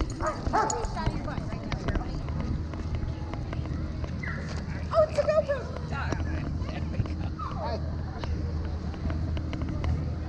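Dogs barking and yipping a few times, the loudest bark about five seconds in, over the chatter of a crowd and a steady low rumble.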